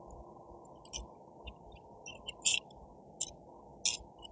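Gritty granular bonsai soil mix rattling and clicking as it is tipped from a scoop into a plastic pot, in short, scattered, faint bursts.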